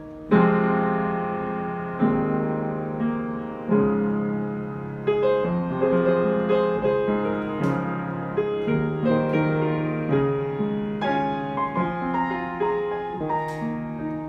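Digital piano playing a pop-song cover: full chords struck about every two seconds, each left to ring and fade. From about five seconds in, a quicker melody line of single notes runs over the held chords.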